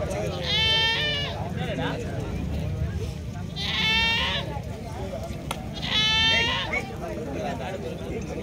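A goat bleating three times, each bleat short and wavering, about two and a half seconds apart, over the low murmur of a crowd.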